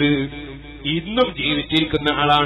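A man's voice preaching in Malayalam with a drawn-out, chant-like delivery.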